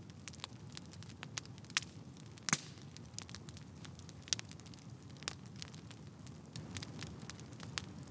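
Faint crackling sound effect: irregular sharp clicks and pops over a low, steady rumble, with the loudest pops about two and a half and four seconds in.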